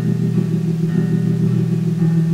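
Old-school dungeon synth: low, sustained synthesizer chords held steadily, with a change in the chord about a second in.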